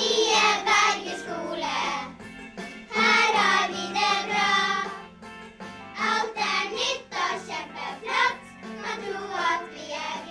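A group of young schoolchildren singing a song together in unison.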